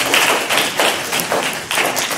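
Scattered audience applause, many quick irregular claps, just after a public speaker finishes.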